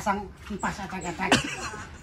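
Voices talking, with a short, loud sound about a second and a half in.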